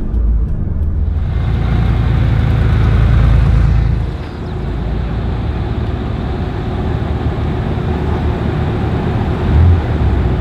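Subaru WRX STI engine and road noise heard inside the cabin, a steady low rumble growing slightly louder. After about four seconds it gives way to steady outdoor engine noise from sports cars lined up in the pit lane, with a brief low thump near the end.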